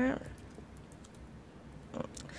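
Faint, scattered clicks of typing on a laptop keyboard over low room tone, after a spoken word trails off at the very start.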